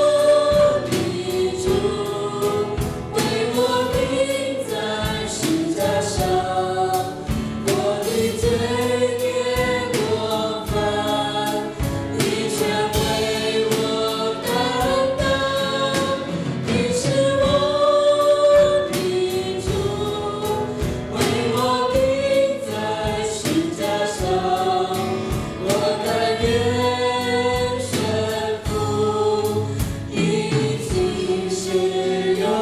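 A worship band performing a Mandarin worship song: men and women singing together into microphones, backed by piano, acoustic guitar and drum kit.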